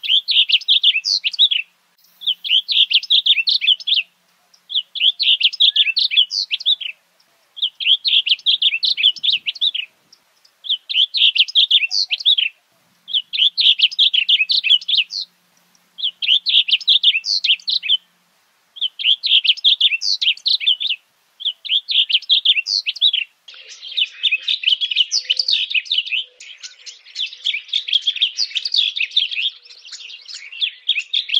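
Male blue grosbeak singing: short high song phrases of rapid notes, repeated about every two seconds with brief pauses. Near the end the phrases run together with no gaps.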